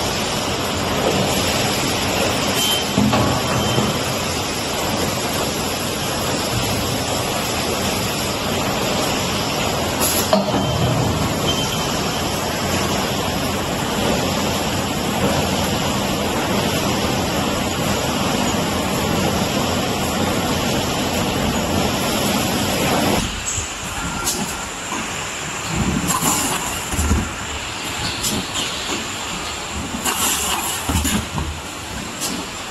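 Steady, dense running noise of an automatic edible-oil bottle filling line: conveyors and pneumatic machinery working together. About three-quarters of the way through, the noise suddenly drops and gives way to quieter, intermittent mechanical knocks and clatter.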